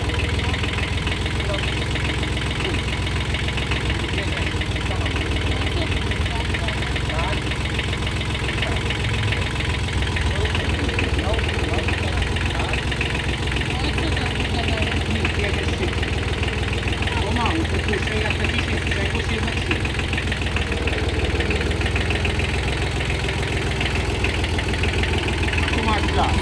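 Kubota B7001 garden tractor's small diesel engine idling steadily.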